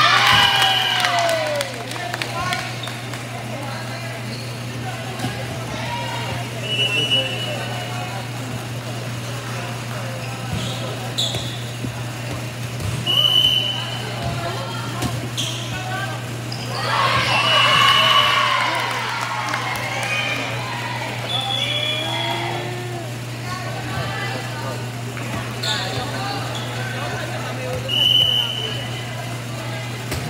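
Indoor volleyball in a gym: players shouting and calling, loudest at the very start and again about two-thirds of the way through, with scattered ball hits and short high squeaks over a steady low hum.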